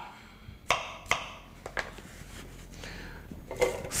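A few light knocks and taps of a knife and chopped apple pieces on a cutting board, with a short scrape as the pieces are gathered up.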